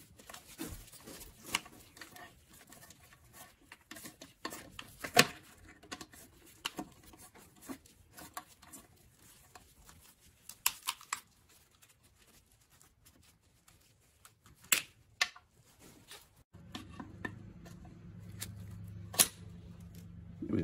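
Scattered small metal clicks and taps of pliers working a cotter pin out of a motorcycle's linkage, a few sharper ticks standing out. A steady low hum sets in near the end.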